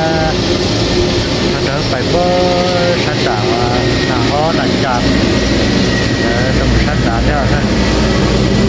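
A man talking in Hmong over a steady low mechanical rumble, like a motor running.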